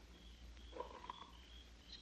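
Near silence: a pause in the dialogue, with faint short high chirps now and then.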